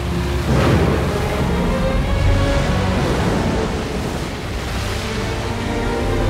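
Dramatic orchestral film score with sustained chords over a deep, steady storm rumble, and a loud surge about half a second in.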